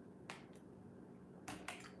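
Drinking from a plastic water bottle: a single faint click about a third of a second in, then a couple more near the end as a short word is spoken.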